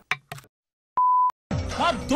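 A short electronic beep, one steady tone lasting about a third of a second, about a second in. Near the end the next clip starts with music and voices.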